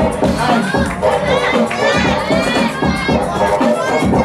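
A crowd of spectators, many of them children, shouting and cheering over a hip-hop beat, with a burst of high excited yells in the middle.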